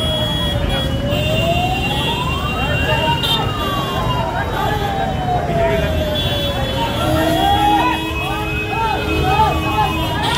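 Fire engine siren in a slow wail, rising for about two seconds and falling for about four, twice over, above the rumble of street traffic and the voices of bystanders.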